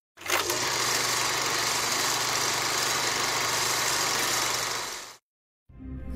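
A steady engine drone with a low hum underneath, fading out about five seconds in.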